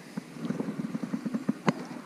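Spinning reel being cranked while reeling in a hooked bass: a quick, uneven run of light clicks, with one sharper click near the end.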